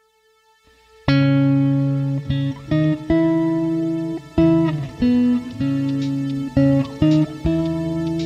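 Squier Classic Vibe Telecaster electric guitar, recorded through a Poulin LE456 amp simulator, playing alone. It comes in loudly about a second in with sustained chords that ring and are re-struck roughly every half second to second, with short breaks between some of them.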